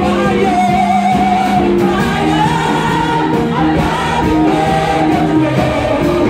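Congregation singing a gospel worship song together over instrumental accompaniment, many voices at once with long held notes.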